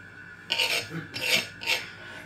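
Kitchen knife cutting through chopped onion on a plastic cutting board: about three short rasping strokes.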